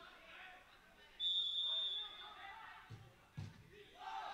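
A referee's whistle blown once, a single steady shrill blast of nearly a second about a second in, followed near the end by two dull thumps over faint background voices.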